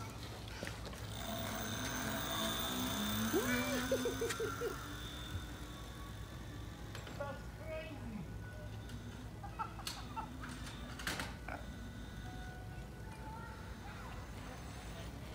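High, thin whine of an electric bike's motor as it pulls away and fades with distance, with a person laughing a few seconds in. A few sharp clicks later on.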